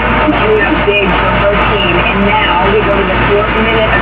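Muffled television broadcast audio: indistinct voices with wavering pitch, over a steady low hum.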